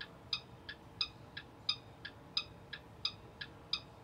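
School bus turn-signal flasher ticking steadily with the left turn signal on, about three ticks a second, alternating between two slightly different tones.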